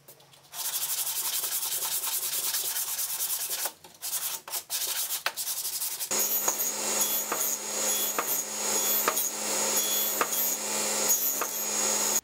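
Hand sanding with sandpaper on a sanding block, rubbed quickly back and forth along a spruce strip. There is a short break about a third of the way in. From about halfway the sanding goes on with a steady low hum under it.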